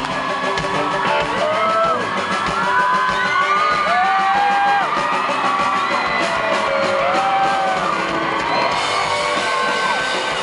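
Live rock band playing in a large hall, a lead melody of held notes that bend and slide in pitch over the full band, with whoops and cheers from the crowd.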